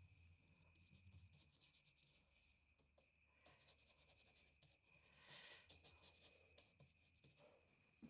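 Very faint strokes of a paintbrush dabbing and dragging oil paint across paper, in short clusters, the loudest about five to six seconds in, over a faint steady hum.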